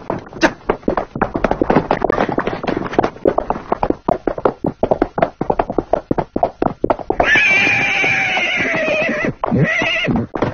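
Rapid hoofbeats of a galloping horse, then the horse neighing for about two seconds, slightly falling in pitch, with a second short whinny just before the end.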